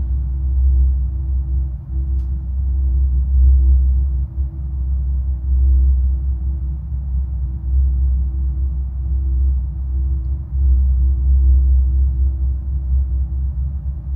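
Steady ambient background drone of a hypnosis track: a deep, loud low rumble with a steady thin tone above it, the binaural-beat bed.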